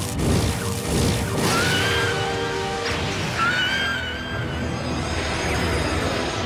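Dramatic action-cartoon score layered with heavy rumbling and crashing battle sound effects. A wavering high tone rises over it twice, about a second and a half in and again past three seconds.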